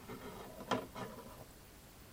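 Handling noise: two light knocks about a second in, as something is picked up or moved near the microphone, then quiet room tone.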